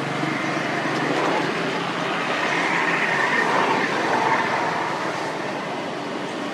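A passing vehicle, its steady noise swelling over the first few seconds and easing off toward the end.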